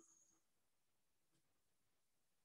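Near silence: a pause in a video-call talk, with only a faint click.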